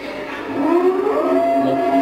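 A long eerie wailing tone: it glides up about half a second in and then holds, like a slow siren or a ghostly moan.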